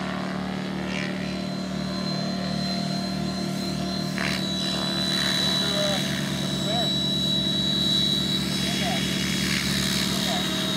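Thunder Tiger radio-controlled model helicopter in flight: a steady buzz from its engine and rotors over a constant high whine, growing somewhat louder about halfway through as it comes down low.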